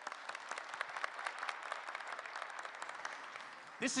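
Audience applauding in a large hall, the clapping thinning out toward the end as a man starts to speak.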